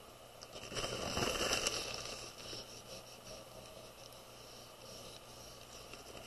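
Paper towel rubbing over chalk pastel on drawing paper to blend the colours, a soft scratchy rubbing for about two seconds that then fades to faint handling.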